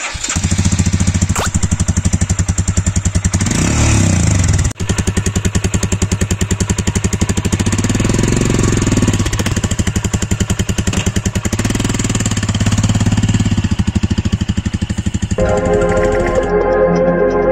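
Royal Enfield Himalayan's 411 cc single-cylinder engine idling with evenly spaced firing pulses through its exhaust, revved up briefly three times. Music comes in near the end.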